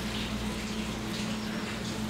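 Metal spoon spreading thick milk-cream filling in a plastic-lined cake pan: soft, faint scrapes and plastic rustles over a steady low hum.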